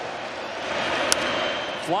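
Steady noise of a packed ballpark crowd, with one sharp crack of a wooden bat meeting the ball about a second in: a solidly struck fly ball that carries for a home run. The crowd swells a little after the crack.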